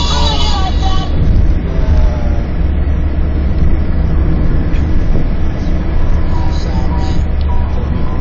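Steady low rumble of a car driving, heard from inside the cabin, with music playing over it for about the first second.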